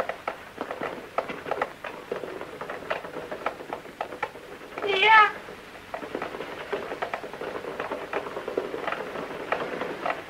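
A cat meows once, about five seconds in, a short call with a bending pitch. Clicks and crackle of an old film soundtrack run underneath.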